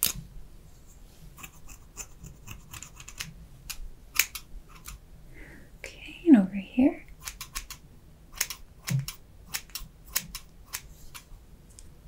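Hair-cutting scissors snipping over and over in quick, irregular strokes, trimming the ends of the hair. A short two-part vocal sound comes about six seconds in.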